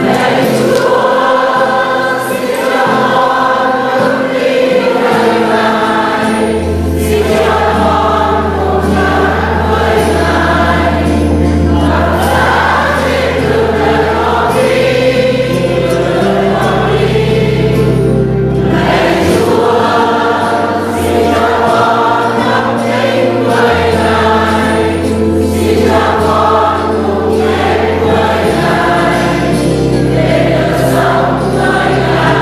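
A congregation singing a Vietnamese hymn together, with held low bass notes from an accompanying instrument that change every few seconds.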